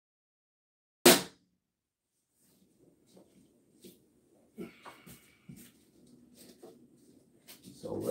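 A single loud knock about a second in, then faint scattered clicks and scrapes, as barn-door hanger hardware is handled against the overhead rail.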